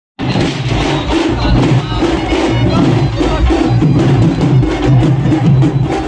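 Loud procession music driven by fast, dense drum and percussion strikes.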